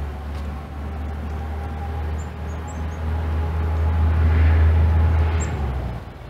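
Low engine rumble of a passing motor vehicle, swelling to its loudest near the end and then dropping away. A few faint, high bird chirps sound over it, in the middle and again near the end.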